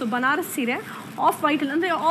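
A woman speaking: only speech.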